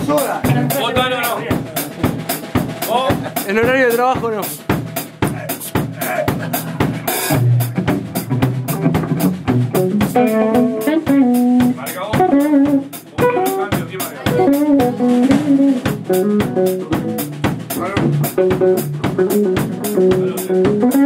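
A rock band playing live in a rehearsal room: a drum kit with steady snare and bass drum hits under a Les Paul-style electric guitar, and a man singing into the microphone.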